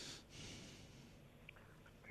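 Near silence: a pause in the talk, with a faint breath in the first half second.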